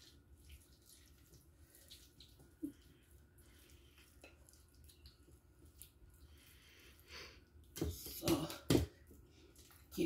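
Spatula scraping potato salad out of a mixing bowl: faint soft scraping, then a few louder short scrapes about eight seconds in.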